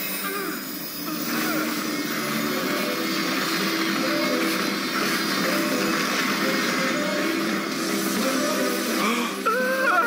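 Dramatic anime soundtrack music under a sustained rushing sound effect for a monster's transformation into a Zoalord, with a brief dip about a second in.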